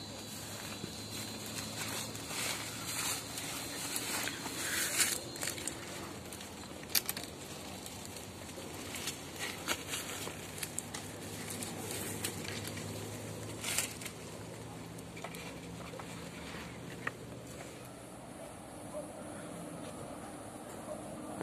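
Cord being wrapped and pulled tight around crossed branches to lash a camp-frame joint: intermittent rustling, brushing leaves and light knocks and clicks. A faint steady low hum runs underneath.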